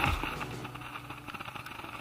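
Background music fading out at the start, then faint rustling and handling noise from clothing moving against the camera over a steady outdoor hiss.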